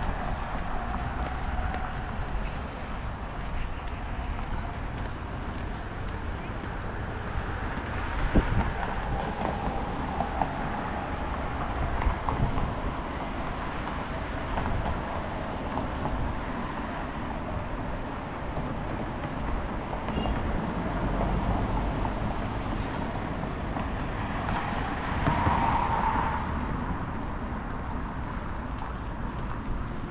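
Street ambience of road traffic going by alongside, a steady rumble of cars, with one louder vehicle pass near the end.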